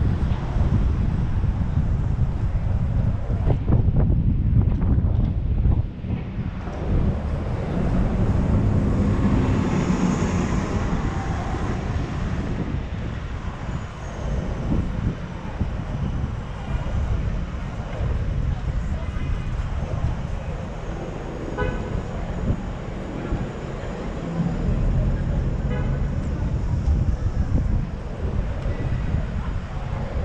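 City street traffic heard from a car driving slowly, with a heavy low rumble of wind on the microphone. A horn toots briefly in the second half.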